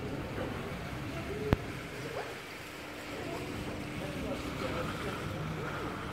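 Pedestrian street ambience: indistinct voices of passers-by over a steady background hum, with one sharp click about a second and a half in.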